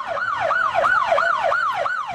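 Police siren in yelp mode, its pitch sweeping rapidly up and down nearly four times a second.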